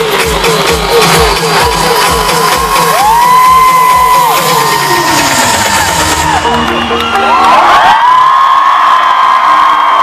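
Electronic dance music played loud over a festival sound system: a steady four-on-the-floor kick drum that cuts out about halfway through into a breakdown. A crowd cheers and whoops over it, louder near the end.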